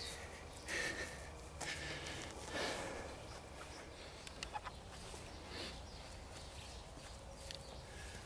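A man breathing hard through the nose and mouth after a set of pull-ups, about one breath a second at first, with a few faint clicks around the middle.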